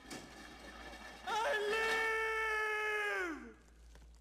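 A cartoon dragon character's long, held yell. It starts a little over a second in, stays steady in pitch for about two seconds, then slides down and stops.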